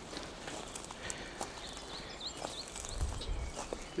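Footsteps on dry leaf litter and twigs: a few scattered, soft steps and snaps.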